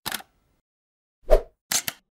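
Sound effects of an animated logo intro: a brief click at the start, a loud pop about two-thirds of the way through, then a quick double click near the end.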